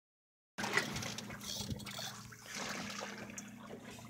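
Water lapping and splashing against a boat's hull, with a steady low hum underneath. It starts about half a second in, after a moment of silence.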